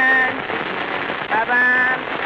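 A 1930 Paramount 78 rpm blues record: a woman's voice sings held, wavering notes over piano, one note ending just after the start and a short phrase near the end. A constant crackle and hiss of shellac surface noise runs under it, and the sound is cut off above the middle treble.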